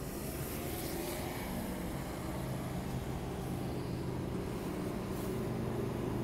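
A motor vehicle engine running, a steady low hum that grows slightly louder, over street noise.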